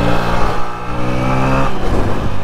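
A motorcycle engine holding a steady high-revving note at speed, with wind buffeting the microphone; the engine note drops out about a second and a half in.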